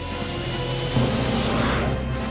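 A rushing sound effect that swells and cuts off abruptly near the end, over sustained background music.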